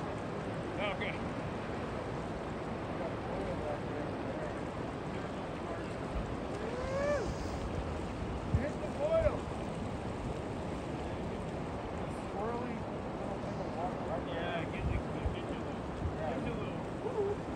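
Steady rush of a river's whitewater pouring over a play wave, with faint distant voices calling out now and then. A few brief low bumps of wind hit the microphone.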